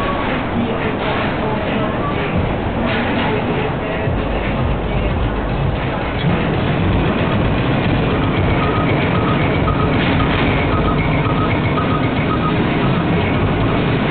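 Party noise: music playing with indistinct voices over a steady low rumble.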